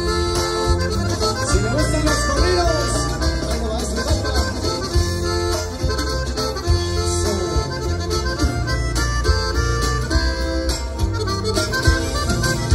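A live norteño band playing the opening of a corrido through a large PA. An accordion carries the melody over strummed guitar, bass and a steady drum beat.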